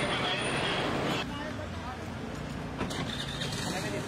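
Street noise: a vehicle engine running with a steady low hum under indistinct chatter, louder for about the first second.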